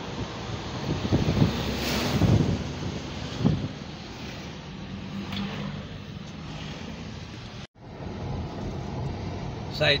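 Car cabin noise while driving: a steady engine hum with road and wind noise, and a few louder rattles in the first few seconds. The sound cuts out for an instant about three-quarters of the way through.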